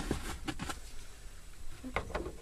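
Faint scattered clicks and light handling noise over a low rumble.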